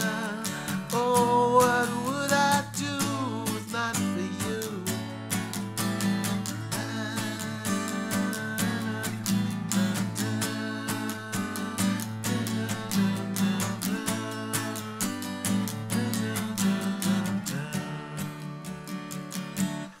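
Martin Road Series GPRS1 acoustic guitar in open D tuning (DADF#AD), strummed through a chord progression in a steady rhythm, then stopping.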